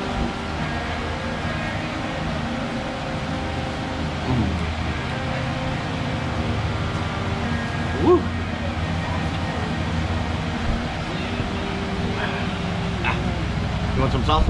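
Steady low hum and rumble of background machinery or traffic, with a short rising vocal 'mm' about eight seconds in.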